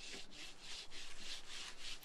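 Faint rubbing, scraping noise with a light, uneven repeated texture.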